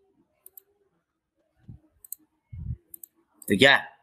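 Computer mouse buttons clicking a few times, each click a quick press-and-release pair, with a couple of soft low thumps in between; a man's voice begins near the end.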